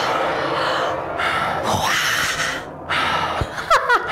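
A person breathing hard after an intense workout: a few loud, breathy exhalations, then a short vocal exclamation with sliding pitch near the end.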